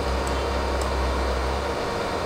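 Pink-noise test signal from Smaart measurement software playing through a loudspeaker to measure its arrival time: a steady hiss with a strong low hum beneath it that drops away near the end.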